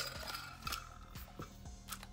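A metal Poké Ball tin being opened and handled: a sharp click at the start, then scattered light clicks and clinks as the tin and its contents, a coin and booster packs, shift about.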